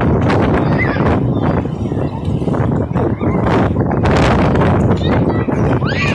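Children slapping and splashing their hands in shallow seawater against a loud, steady wash of beach noise, with a few brief high-pitched calls.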